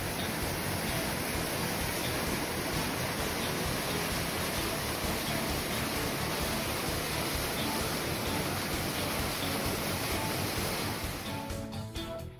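A mountain stream cascading over rocks in a small waterfall into a pool, a loud, steady rush of water. The rushing stops suddenly shortly before the end, leaving acoustic guitar music.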